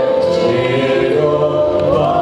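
A mantra sung by a group of voices in long held notes over a live acoustic ensemble that includes harp and cello.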